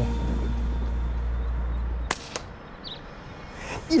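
A single shot from an Air Arms S410 TDR pre-charged pneumatic air rifle about halfway in: a short, sharp crack with a fainter tick just after it, over background music that cuts off at the shot.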